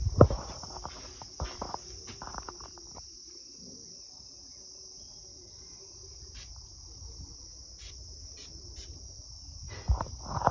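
A steady, high-pitched insect chorus runs throughout. A few soft knocks and rustles come in the first three seconds, and a handful of short, high chirps come later.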